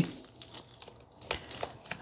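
A USB flash drive being pushed into a laptop's side USB port: a few faint clicks and rustles of handling.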